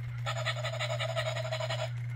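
Battery-powered toy Dalmatian puppy's recorded voice: a steady-pitched, rapidly pulsing whine lasting about a second and a half.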